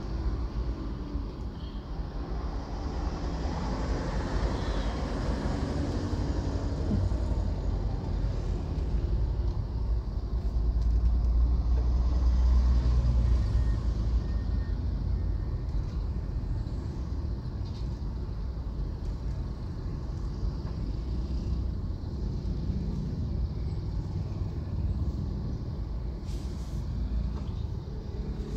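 Low engine rumble and traffic noise heard from inside a car moving slowly in heavy traffic, growing louder for a few seconds around the middle.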